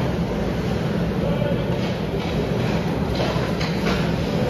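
Ice hockey play: skate blades scraping and carving the ice in several short strokes, with sticks on the puck, over a steady low rumble in the rink.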